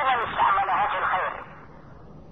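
A man speaking over a telephone line, the voice narrow and thin; he stops about one and a half seconds in, leaving faint line noise.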